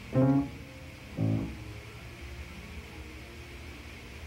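Piano between sung vocal exercises: two short notes or chords, one right at the start and one about a second in, the second left ringing quietly.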